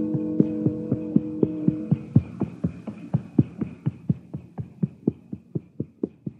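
Radio sound effect of a horse trotting, its hoofbeats about four a second, with a faint steady high ringing above them. A music bridge fades out under the hoofbeats in the first two seconds.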